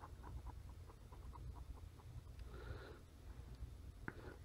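Faint, quick ticks of an N-trig stylus nib on a Surface Pro 3's glass screen as strokes are drawn, followed by a short soft rustle about three seconds in.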